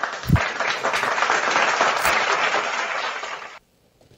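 Crowd applause, a recorded clapping effect played into the live stream, cutting off suddenly a little before the end.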